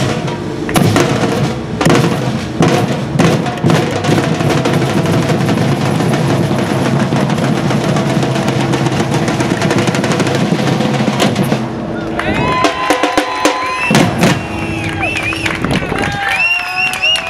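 Batucada drum ensemble playing together on surdo bass drums and snare drums, a dense run of strokes that all stop at once about twelve seconds in. High calls and shouts from the players follow.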